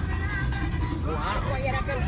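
Low, steady rumble of a four-cylinder 3.0-litre engine and tyres on a dirt road, heard from inside the cab as the vehicle climbs a mountain track in two-wheel drive.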